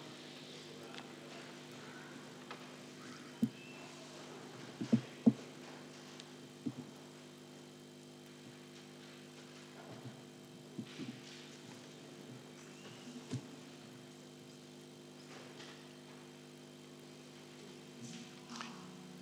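Quiet room tone of a meeting hall over the microphone system: a steady low electrical hum, with a few scattered small knocks and clicks.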